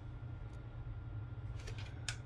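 KLIM Ultimate laptop cooling pad's 20 cm fan running at max speed: a faint, steady low hum. A couple of faint clicks come about a second and a half in.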